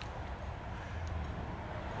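Steady low background rumble with no distinct event, and one faint tick about a second in.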